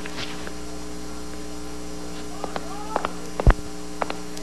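Steady electrical mains hum in the soundtrack, with a few faint ticks, a faint rising tone about two and a half seconds in, and a sudden low thump about three and a half seconds in.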